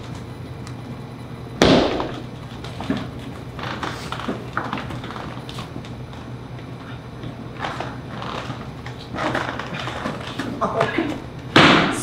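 A single hard foot stamp on a stage floor about a second and a half in, the signal that stands for a body falling and starts the timing. It is followed by slow, shuffling footsteps and small knocks as a man walks hunched across the stage.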